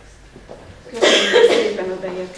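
A person's voice breaks out loudly about a second in, a short vocal burst that may be a cough or a few quick words, after a quiet room before it.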